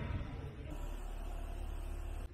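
Steady low rumble with a faint hiss: background noise, with no distinct sound event.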